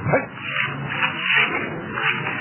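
A dog giving a short whimpering call that falls in pitch just after the start.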